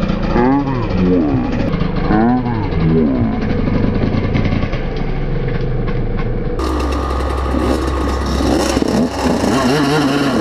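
Dirt bike engines revving up and down in repeated sweeps, the pitch rising and falling about once a second; among them is a Yamaha YZ125 two-stroke. From about two-thirds of the way in, a steadier engine drone runs under the revving.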